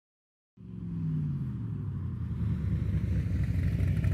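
Car engine running with a low, rough rumble. It starts about half a second in and its pitch dips slightly at first.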